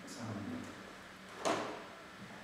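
Martial-arts moves on a wooden floor: a short low sound early on, then one sharp smack about one and a half seconds in, from a stamp or strike during the form.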